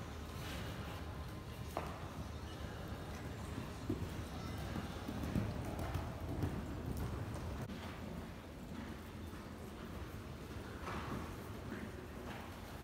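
Hoofbeats of horses being ridden on sand footing in an indoor arena: irregular soft strikes, with a few sharper knocks.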